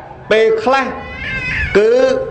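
A man preaching in Khmer, with short spoken syllables. About halfway through there is a quieter, high, wavering drawn-out sound, then speech resumes near the end.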